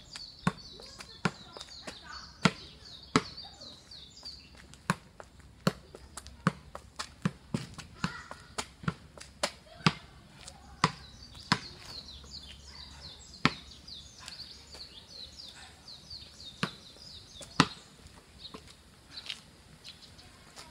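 A soccer ball being juggled with the outside of the foot: a run of sharp kicks, roughly one a second and slightly uneven, with a pause of a couple of seconds late on. Birds chirp in the background.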